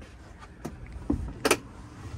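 A few light clicks and knocks of tools and plastic bins being handled, the sharpest about one and a half seconds in, over a low background rumble.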